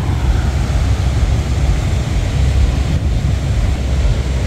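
Wind buffeting the phone's microphone in a loud, uneven low rumble, over the steady wash of sea surf breaking.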